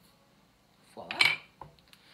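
Quiet kitchen room tone, then a spoken "voila" about a second in, followed by a couple of light clicks of kitchen dishes being handled as the salt ramekin and spoon are moved away.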